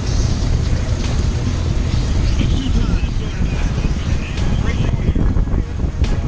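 Bass boat's outboard motor running at idle speed, a steady low rumble, with wind buffeting the microphone.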